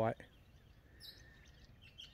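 Quiet outdoor ambience with small birds chirping: a short, high chirp about a second in and another near the end.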